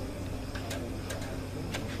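A few faint, irregularly spaced clicks from a mobile phone being handled and dialled, over a steady low electrical hum.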